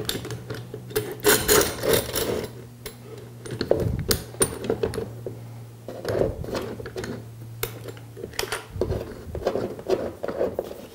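Parallel-jaw bar clamps being fitted to a glued plywood panel: scattered clicks and knocks as the sliding jaw is moved along the steel bar and the clamp is set against the wood. A steady low hum sits underneath and stops near the end.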